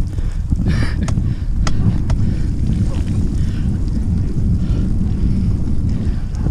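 Wind buffeting the microphone of a camera on a moving bicycle: a steady, loud low rumble, with a few faint clicks.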